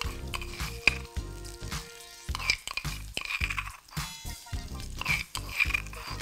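Spoon clinking and scraping against cookware in a series of short, irregular knocks, with a faint sizzle of ginger and garlic frying in oil.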